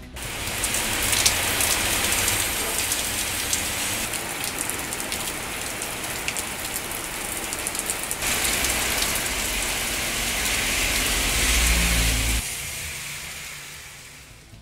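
Heavy rain falling on a wet town street, a steady hiss of drops on the road surface. A deep low rumble swells near the end, then the rain sound fades away.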